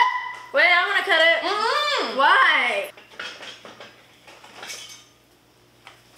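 Wordless vocalizing by a person, about four swooping rises and falls in pitch over a couple of seconds, followed by light clinks of kitchenware.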